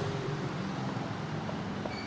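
Steady low background noise with a faint hum, the room tone of a shop.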